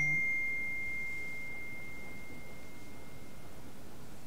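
A single bell-like chime: one clear pure tone that starts suddenly and fades away slowly over about three seconds.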